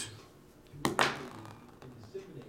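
A twelve-sided die rolled onto a cloth mat, landing with two quick taps about a second in.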